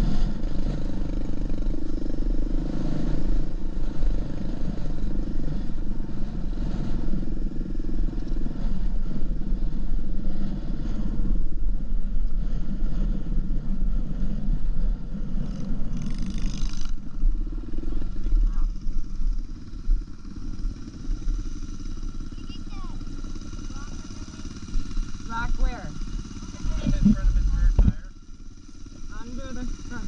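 Dirt bike engine running with a steady low rumble; the rumble drops away a little past halfway. Voices come in over it in the last several seconds.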